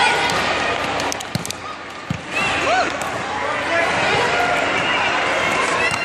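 A futsal ball being kicked and bouncing on an indoor sport court, with two sharp thuds about one and a half and two seconds in, over the chatter and shouts of players and spectators in a large hall.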